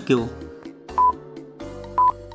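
Countdown timer beeping once a second, short, high, single-pitched beeps over steady background music.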